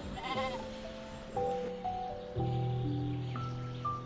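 A sheep bleats once, a short wavering call near the start, over background music with long held notes.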